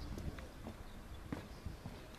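Footsteps on grass, a few soft irregular knocks, over a low rumble of wind on the microphone.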